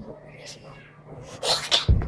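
A child's voice: a short sound near the start, then about a second and a half in a loud, breathy, sneeze-like exclamation, ending in a low thump. A faint steady hum runs underneath.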